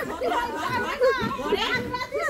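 Several women's voices talking and calling over one another in lively chatter.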